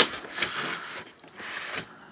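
Styrofoam packing blocks being pulled apart and rubbing against each other: a loud sharp snap right at the start, then a few short squeaky scrapes.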